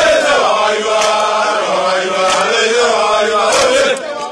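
A group of men chanting together in unison, a loud drill chant sung by a marching squad.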